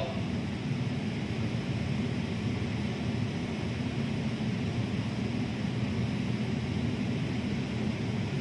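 Steady low hum with a fainter hiss, even throughout, from running machinery in the background.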